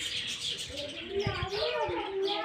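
Small birds chirping, with a person's voice in the background.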